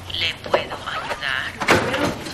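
A person's voice making short sounds that waver in pitch, with two sharp clicks, one about half a second in and one near the end.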